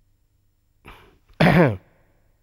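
A man clearing his throat: a faint breathy rasp about a second in, then a louder short voiced sound that falls in pitch.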